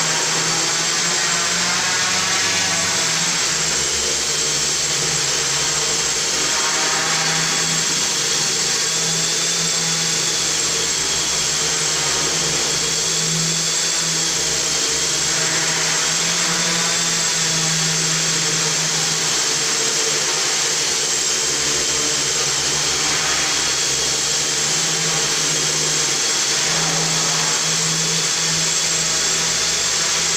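A quadcopter's four 1000Kv brushless motors and propellers running while it hovers: a steady buzzing whine whose pitch wavers slightly as the motor speeds adjust.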